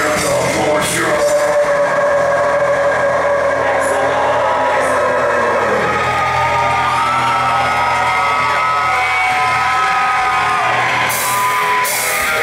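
Live metal band playing through a loud PA: distorted electric guitars hold long sustained notes, some bending slowly in pitch, under shouted vocals. The cymbals mostly drop out in the middle and crash back in near the end.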